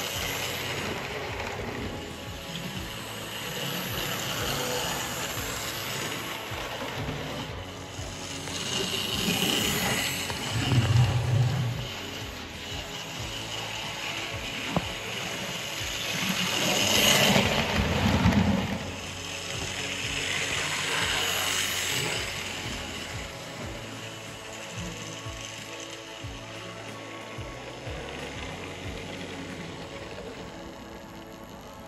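Tri-Ang model steam locomotives running on a DC layout: the whirr and clatter of motor, gears and wheels on track. It swells and fades twice as a loco passes close, loudest about a third of the way in and again just past halfway.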